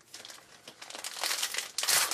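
A trading-card pack wrapper crinkling as it is handled and opened, growing louder toward the end.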